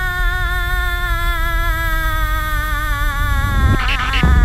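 Sound effect of a machine powering down: a sustained electronic hum that sinks slowly in pitch over a steady low rumble and fades out, followed near the end by a short loud burst of noise.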